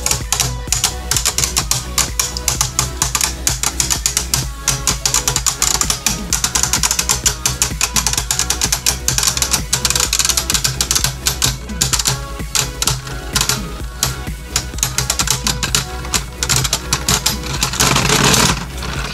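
Two spinning Beyblade Burst tops, Hercules H4 and Salamander S4, rattling with rapid, continuous clicking as they grind against each other and the plastic stadium floor.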